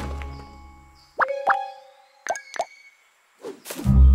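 Cartoon plop sound effects: short pops that sweep quickly up in pitch, two about a second in and three more a second later, after a music chord fades away. Music comes back in near the end.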